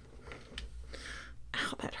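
A woman's soft, breathy whispered speech, ending with a spoken word near the end.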